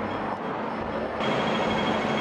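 City street traffic: a steady hum of passing vehicles. A bit over a second in it turns louder, with a steady high whine added.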